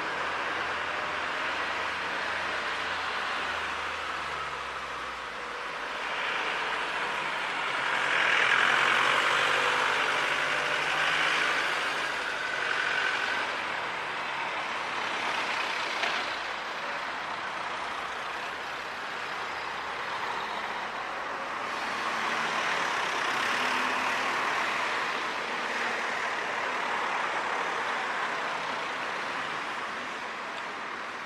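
Road traffic: cars driving past close by, the engine and tyre noise swelling louder twice as vehicles go by.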